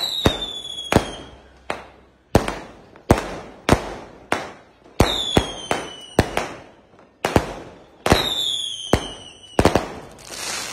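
Fireworks launching and bursting in rapid succession, sharp bangs about twice a second. Three whistles fall in pitch, at the start, about five seconds in and about eight seconds in.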